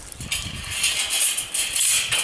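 Metal farm gate being unlatched and pulled open by hand: its latch and tubular bars rattle and scrape, starting about a third of a second in.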